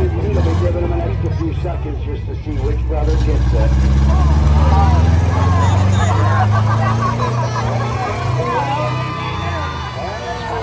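Demolition derby truck engines revving, the revs climbing about three seconds in, peaking around the middle and easing off after about eight seconds, with spectators' voices and crowd chatter over them.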